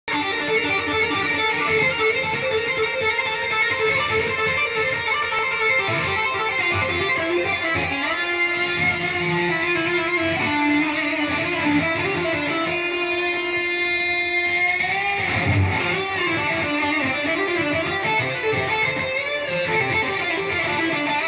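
BC Rich Warlock electric guitar played through a Blackstar amplifier in an improvised shred solo of fast runs. About two-thirds of the way in, a long held note bends up at its end, followed by a brief low thump.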